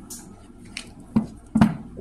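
A deck of tarot cards being shuffled by hand, with a few short sharp card slaps, the loudest two in the second half.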